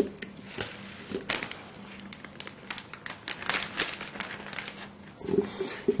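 A hand scrapes seasoned ground sausage meat around a stainless steel bowl while a plastic zip-top bag crinkles, giving a string of irregular soft clicks and crinkles.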